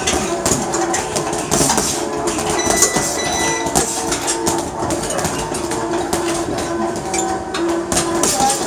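20 oz Ringside boxing gloves punching a hanging heavy bag, a run of thuds and slaps throughout.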